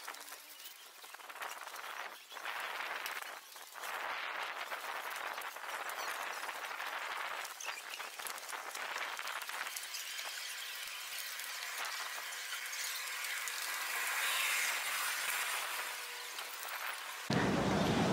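Outdoor ambience, mostly a faint high hiss with scattered small clicks. It cuts abruptly to louder, fuller sound near the end.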